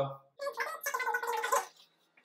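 An office chair creaking and squeaking for about a second as someone gets up out of it.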